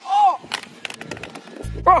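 A short cry, then several sharp, irregular knocks and clatters of things hitting the hard tennis court. A low steady hum of background music comes in near the end.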